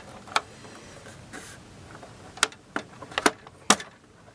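Hard plastic clicks and taps from the toy fire truck's plastic ladder assembly as its gear is fitted into the socket in the truck body: one near the start and a quick run of four in the second half, the last the loudest.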